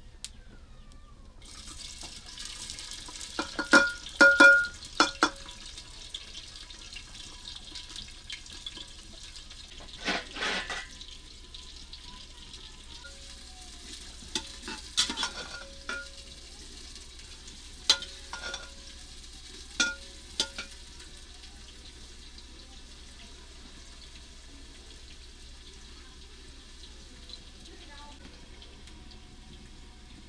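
Food sizzling in hot oil in a metal pot over a wood fire; the sizzle starts a moment after the food goes in. A metal spoon clanks and rings against the pot several times as it is stirred, in bursts around four seconds in, around ten seconds in, and a few times between fifteen and twenty seconds.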